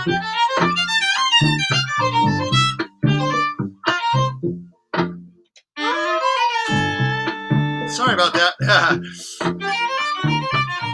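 Acoustic violin played through a Boss ME-80 multi-effects pedal, its upper-octave effect blended with the dry violin sound, over a repeating low rhythmic pulse. The phrases break off briefly about halfway, then resume with a long held note.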